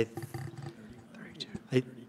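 Speech: a man hesitates, saying "I," pausing, then "I" again. In the pause there are faint background voices and a small knock.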